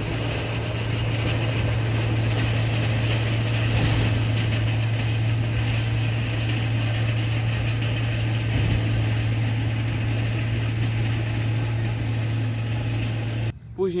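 Very heavy construction vehicle passing close by: a steady low engine drone with a noisy hiss above it, cutting off abruptly near the end.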